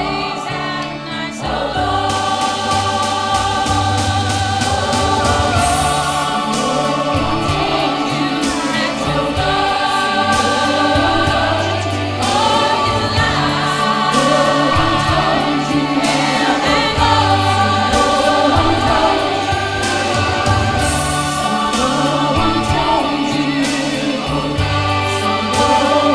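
Choir singing in harmony over instrumental backing with steady bass notes and a regular beat.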